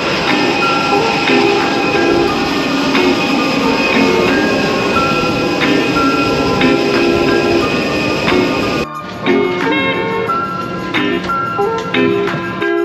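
Background music with a light plucked melody over a loud, steady rushing roar of aircraft noise on the airport apron. The roar cuts off abruptly about nine seconds in, leaving the music alone.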